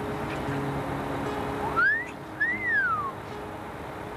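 Soft background music with held low notes, and about two seconds in a loud two-part wolf whistle: a short rising note, then a longer one that rises and falls.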